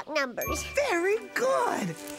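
A high, childlike character voice vocalising in gliding pitches over children's music. About half a second in, a bright chime or twinkle sound effect rings briefly.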